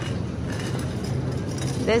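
Steady low rumble and hum of supermarket background noise, with no clear separate events, until a woman's voice starts right at the end.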